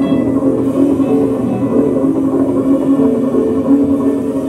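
Live trio of electric guitar, upright bass and drums playing, with sustained held tones in the low-mid range over a busy, continuous texture.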